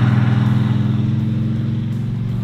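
The 1968 Dodge Charger R/T's 440 cubic-inch V8, fed by a six-pack triple two-barrel carburetor setup, running with a steady, low, pulsing exhaust note. The note fades gradually as the car drives away.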